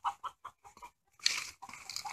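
Chicken clucking in a run of short, quick clucks, with a brief rustle about halfway through.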